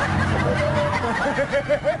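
A person laughing, with a quick run of short chuckles in the second half.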